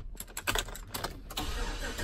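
2016 GMC Sierra 2500 HD pickup being started: the key clicks and jingles in the ignition over the starter cranking, and the engine catches right at the end.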